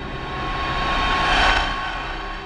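A rushing whoosh of noise that swells to a loud peak about one and a half seconds in and then fades, over soft steady background music.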